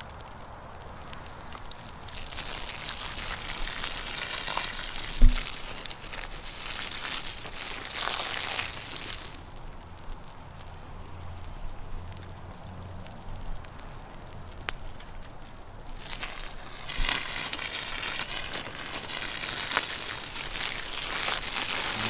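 Burning redwood from a collapsed model house crackling and hissing in a fire, swelling louder twice, with a single thump about five seconds in.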